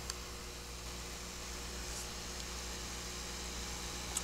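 Steady electrical mains hum with a faint hiss from the grow tent's fluorescent tube lights, with a small click at the very start.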